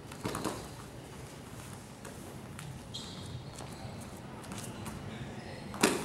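Wrestlers' shoes and bodies moving on a gym wrestling mat: faint scuffs and light knocks, a brief high squeak about halfway through, and a sharp thump near the end.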